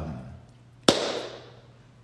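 A single sharp knock about a second in, with a short room echo dying away after it.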